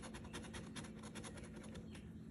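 A metal challenge coin scraping the coating off a scratch-off lottery ticket in quick repeated strokes, about ten a second, faint.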